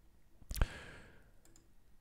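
A single computer mouse click about half a second in, followed by a brief soft hiss that fades out.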